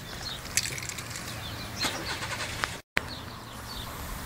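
Outdoor street ambience: a steady rumble of passing traffic with a few faint clicks. The sound cuts out completely for a moment just before the three-second mark.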